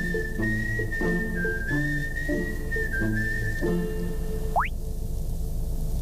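Background music with a whistled melody held on long, slightly stepping notes over a moving bass line. It ends with a quick upward whistle slide about four and a half seconds in.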